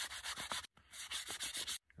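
Sand held in a scrap of buckskin rubbed hard along a carved wooden throwing club: quick back-and-forth scratchy strokes, several a second, sanding the wood smooth like sandpaper.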